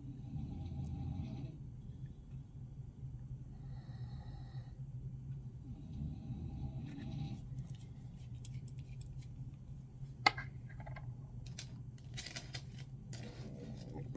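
Small metal clicks and scrapes from digital calipers and a brass .338 Win Mag rifle case being handled. They start about halfway through, with one sharp click about ten seconds in, over a steady low hum.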